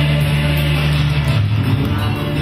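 Loud backing music with sustained low bass notes that shift pitch about a second and a half in.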